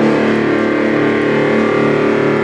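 Distorted electric guitar playing a metal riff: sustained, rapidly picked notes with a thick, buzzing tone.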